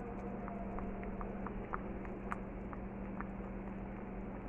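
Pot of sinigang broth at a boil, bubbling with scattered small pops and clicks, the sharpest a little past the middle, as a wooden spoon stirs through it. A steady low hum runs underneath.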